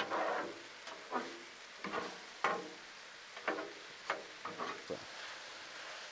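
Ground beef, onions and bell peppers sizzling on a Blackstone flat-top griddle, with metal spatulas scraping across the steel cooktop about eight times at irregular intervals as the food is slid back into the centre.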